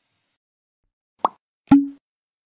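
Logo sting sound effect: a short hit about a second in, then a louder hit half a second later that carries on as a held low tone.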